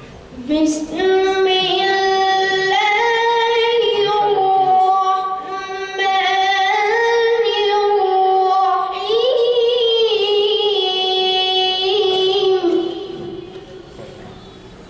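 A child qari reciting the Quran in melodic tajweed style through a microphone: one high voice held in long, ornamented phrases that waver and glide in pitch. There is a short breath around the middle, and the phrase ends shortly before the close.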